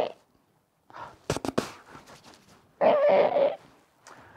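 A man coughing and clearing his throat: a few sharp clicks and a soft rasp about a second in, then a louder, harsher cough lasting under a second near the end.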